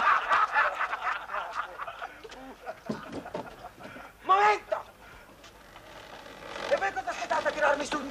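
Indistinct voices speaking in short, broken snatches, with a short loud exclamation about four seconds in and voices picking up near the end.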